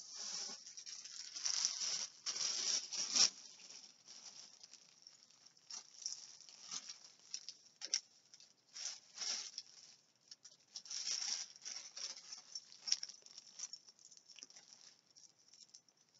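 Crinkly rustling of a bag being rummaged through, in irregular bursts with sharp crackles, loudest between about one and three seconds in.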